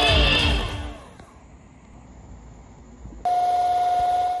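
Small vibration motor in a toy prison cage buzzing at a steady pitch, then winding down in a falling whine within the first half-second as background music fades. After a quiet stretch it starts buzzing again abruptly about three seconds in.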